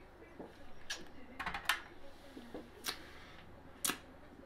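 Quiet mouth sounds of someone tasting a cold beer, with a few sharp lip smacks and clicks. Near the end a glass is set down with a single clear knock on the drip tray of a beer tap.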